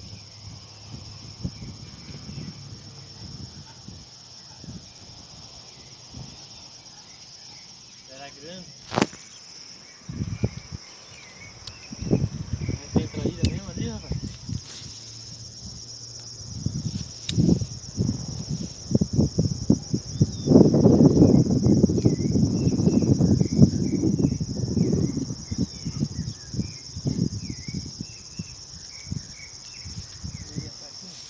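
Steady high chirring of insects. Irregular rustling and buffeting noise starts about a third of the way in and is loudest a little past the middle, with one sharp click shortly before it begins.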